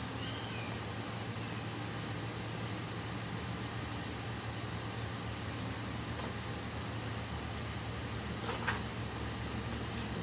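Steady background noise with a constant low hum, without speech, and a faint short chirp near the start.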